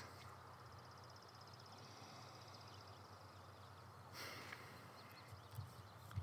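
Near silence: faint outdoor background with a low steady hum.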